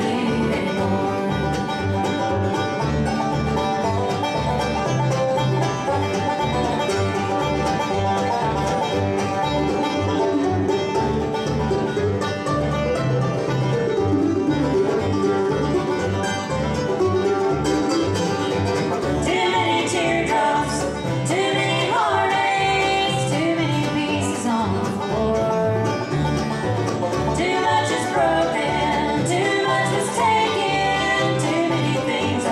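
Bluegrass band playing live: banjo, mandolin and acoustic guitars picking over an upright bass that plucks a steady beat.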